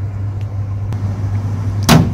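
Steady low hum of a floor-standing air conditioner's indoor unit running with its blower on. One sharp knock comes near the end.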